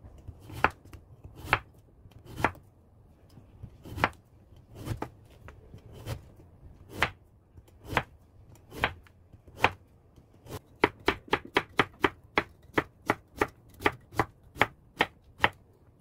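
Kitchen knife slicing a squash on a bamboo cutting board, each cut ending in a sharp knock of the blade on the board. The strokes come slowly and unevenly at first, then speed up to a quick run of about four a second near the end as the slices are cut into thin strips.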